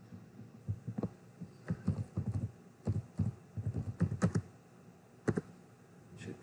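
Typing on a computer keyboard: an irregular run of quick key clicks over about five seconds, stopping shortly before the end.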